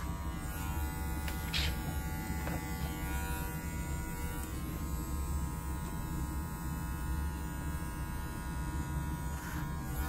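Electric hair clipper running steadily while cutting hair in a clipper-over-comb technique.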